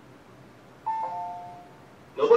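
Two-note descending "ding-dong" chime from a railway station's public-address system, sounding once about a second in and fading away. It is the alert tone before the automated announcement of an approaching inbound train.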